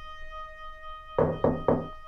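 Three quick knocks on a door, part of a song recording, over a faint held note of music.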